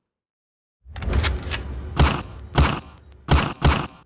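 Logo sound effect: after a short silence, a low rumble sets in, with five sharp gunshot-like bangs at uneven gaps of about half a second, matching bullet holes struck into the logo.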